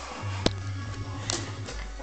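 Background music playing quietly, with two sharp knocks, one about half a second in and one just over a second in.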